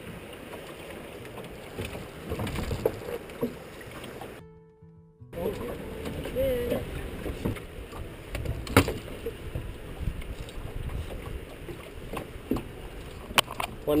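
Steady rush of river water around a drift boat, with wind on the microphone and a few sharp knocks from handling in the boat. The sound cuts out completely for under a second about four and a half seconds in.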